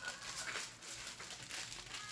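Aluminium foil crinkling faintly as its edge is folded and creased by hand, in soft irregular crackles.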